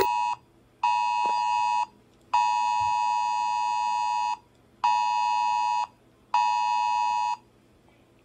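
An emergency-broadcast-style electronic alert tone, a steady two-note buzz, sounding in on-off blasts of one to two seconds with short gaps. It is dropped in to blank out a censored comedy bit.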